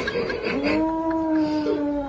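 A kitten's long, drawn-out meow. It begins about half a second in, holds one pitch with a slight downward drift, and is still going at the end.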